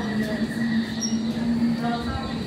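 A steady, even hum held at one pitch, with faint scattered voices of people walking in a queue.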